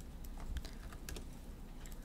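Computer keyboard keys clicking faintly, a few scattered keystrokes, as a value is typed into a field.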